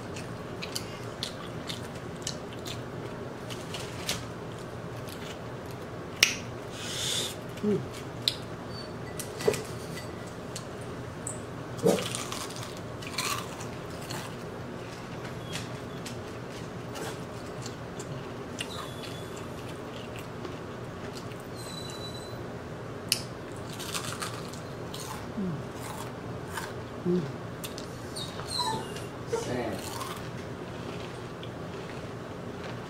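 Close-up eating sounds of fried chicken: crisp crunching, chewing and lip smacks, with sharp clicks scattered throughout and a few louder snaps, over a steady low hum.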